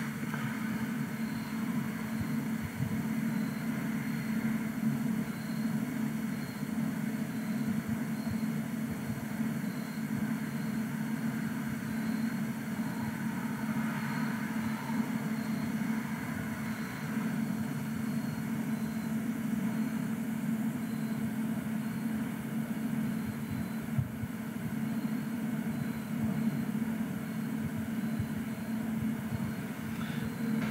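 Steady hum of network equipment cooling fans, with a constant low tone.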